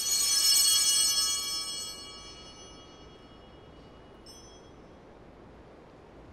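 Altar bells ring once, many high overtones sounding together and fading away over about two seconds; a faint, short metallic ring follows about four seconds in.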